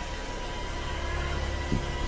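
A steady low hum under an even hiss, with no distinct events.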